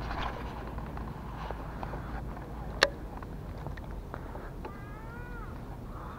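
A single sharp click about halfway through. Near the end comes an animal's drawn-out call that rises and then falls in pitch.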